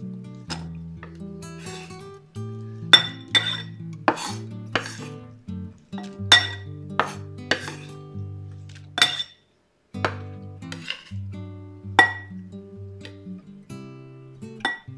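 Kitchen knife chopping onion on a wooden cutting board: irregular sharp knocks of the blade on the board, some with a short metallic ring, over steady background music. All sound cuts out for about half a second about two-thirds of the way through.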